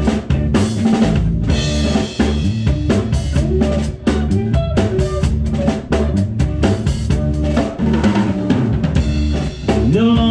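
Live band playing a song with no vocals: a drum kit keeps a steady beat on bass drum and snare under electric bass and electric guitar.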